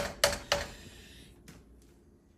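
A metal spoon knocking a few times against a stainless steel cooking pot: two sharp clicks close together with a brief metallic ring, then a fainter click a second later.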